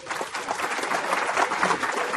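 Audience applauding, many hands clapping at a steady level.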